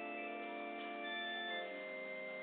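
Pipe organ playing slow, held chords, moving to a new chord about one and a half seconds in.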